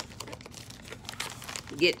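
Plastic bead packets rustling and crinkling as they are handled, in short irregular bursts. A word of speech comes in near the end.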